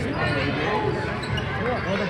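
A basketball being dribbled on a hardwood gym floor, under a steady mix of voices from players and spectators.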